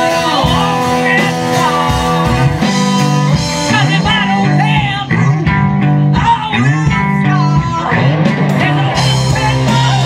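Live rock band playing loudly: electric guitars over bass guitar and drum kit, with bending guitar notes.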